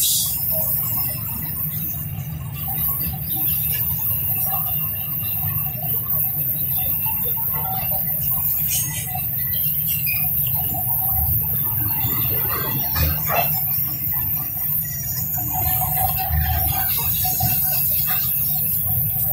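Loaded eucalyptus-log freight wagons rolling past: a steady low rumble of steel wheels on the rails, with scattered high squeals from the wheels.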